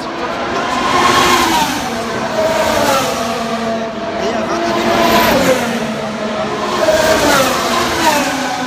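Formula One cars' turbocharged V6 hybrid engines passing one after another on the Monaco street circuit, about four cars roughly two seconds apart. Each engine note swells as it comes past and drops in pitch as it goes away.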